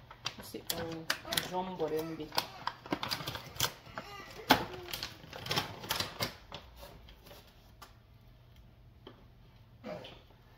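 Plastic bag of frozen jumbo shrimp being handled and opened, crinkling with many quick sharp crackles that thin out about seven seconds in.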